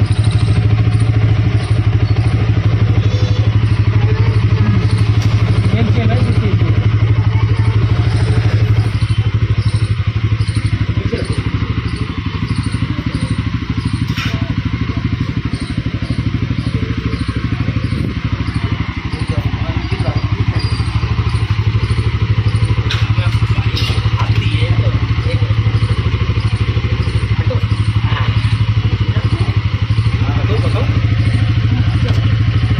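Bajaj Pulsar N160 motorcycle's single-cylinder engine idling steadily.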